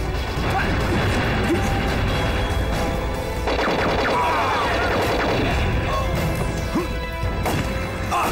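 A dense action-film battle soundtrack: crashing and striking impacts from a fight around a military truck, mixed with a dramatic music score.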